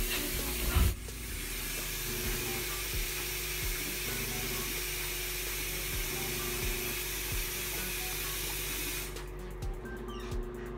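A bathroom sink tap running in a steady hiss from about a second in, cut off about a second before the end, after a brief knock at the start. Background music with a steady beat plays throughout.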